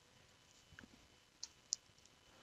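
A few faint computer keyboard key clicks, about three, spaced through the second half of an otherwise near-silent moment.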